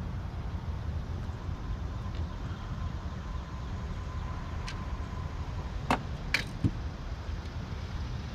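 A bass being landed in a fishing boat: a few sharp knocks and clatters about five to seven seconds in, over a steady low rumble.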